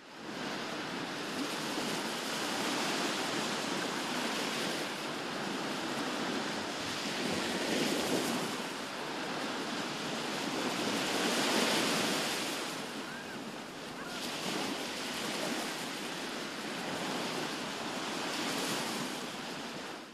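Gentle surf washing onto a sandy beach, swelling and easing every few seconds. It fades in at the start and out at the end.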